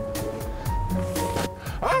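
Background music with a steady beat, a low bass line and held notes; a voice starts to speak at the very end.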